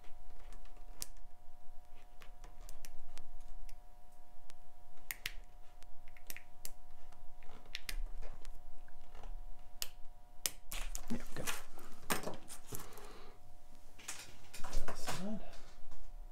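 Scattered small clicks and metal clinks of a stainless steel watch bracelet being worked off a watch case by hand at the lugs, the links rattling. The clicking gets busier and louder in the second half.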